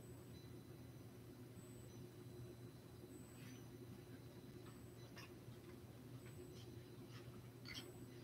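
Near silence: room tone with a steady low hum and a few faint, scattered clicks.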